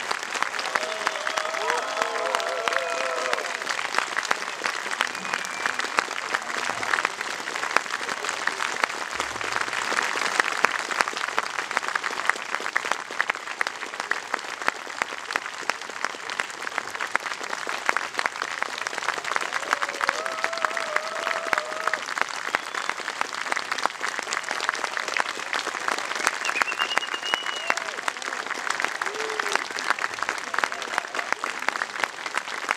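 Audience applauding steadily, with a few voices calling out over the clapping a couple of times.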